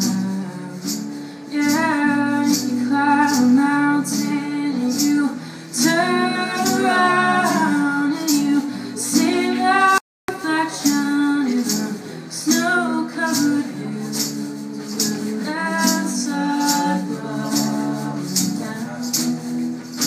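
A small live band playing a slow folk song: a woman singing lead over acoustic guitar, with a steady shaker ticking about twice a second. The sound cuts out completely for a split second about ten seconds in.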